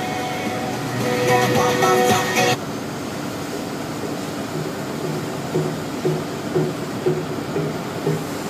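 Truck cab interior while driving: steady engine and road rumble, with music over it for the first two and a half seconds that cuts off suddenly, then soft regular pulses about twice a second.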